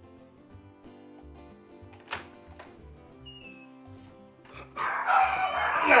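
Quiet background music, then a sudden loud racket of dogs barking starting about five seconds in.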